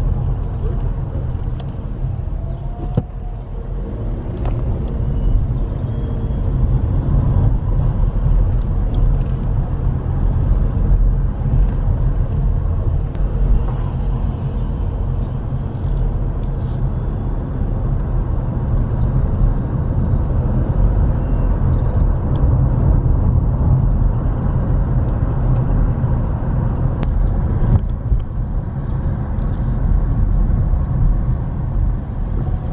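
Car driving at low speed, heard from inside the cabin: a steady low rumble of engine and tyres on the road.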